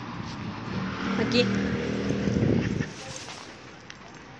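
A motor vehicle's engine going by close by, swelling about a second in and dropping away near three seconds.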